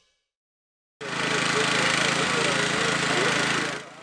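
Silence, then about a second in a steady machine noise like a small engine running starts abruptly, with faint voices in it, and fades out just before the end.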